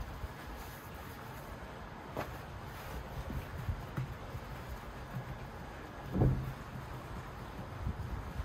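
Soft pats and taps of hands pressing pizza dough out flat on a floured wooden board, over a low steady rumble, with one louder thump about six seconds in.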